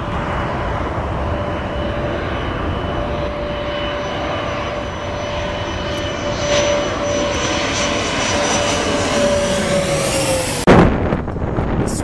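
Bombardier CRJ regional jet on final approach, its two rear-mounted turbofans giving a steady whine over a broad engine rush; the whine falls in pitch about ten seconds in as the jet passes. Just before the end a sudden loud burst of noise breaks in.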